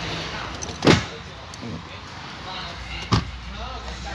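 Two dull knocks, about two seconds apart, with shuffling in between, as a person climbs into the third-row seat of an SUV cabin.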